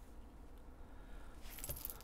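Faint rustling and light jingling of small objects being handled, starting about three-quarters of the way in, over low room noise.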